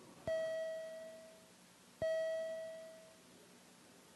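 Chamber voting chime: two identical bell-like tones about two seconds apart, each ringing out and fading over a second or so, sounded as the vote is opened for recording.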